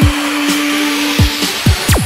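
Heavy-drum electronic dance remix: deep kick drums under one held synth note, with a hissing noise sweep swelling through and a steep falling pitch dive at the end.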